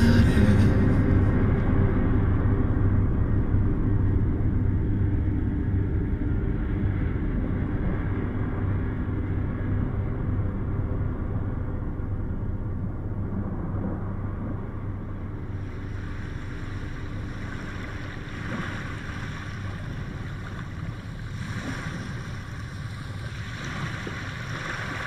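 Closing noise-drone of an ambient post-metal EP: a dense rumbling wash of noise that slowly fades, with a hissing, surf-like swell rising in about two thirds of the way through.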